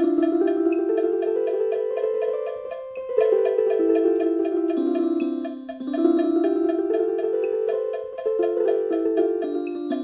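Casio MA-150 electronic keyboard playing a short melody of held notes that steps up and then back down, twice over, along with its own fast repeating beat.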